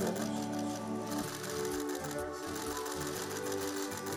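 Background music with steady held notes, overlaid by a fast, even mechanical ticking sound effect.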